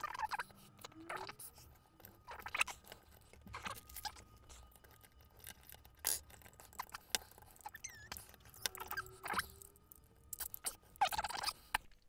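Scattered clicks, taps and light scrapes of a circuit board and its potentiometers being worked by hand into a small metal effects-pedal enclosure, the board knocking against the box as it is fitted.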